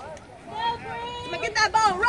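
Voices calling out, one drawn out and held, with a loud, high-pitched shout near the end.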